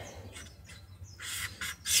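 A felt-tip marker squeaking faintly against paper in a few short strokes.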